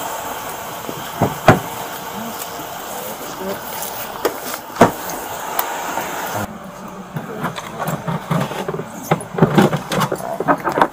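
Steady street noise with a few sharp knocks and rustles as a handcuffed person is put into the back seat of a police SUV. The hiss drops away about six and a half seconds in, and a cluster of short rustling knocks follows near the end.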